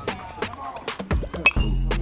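Background music plays throughout. About one and a half seconds in, a metal baseball bat strikes the ball with a single sharp, ringing ping.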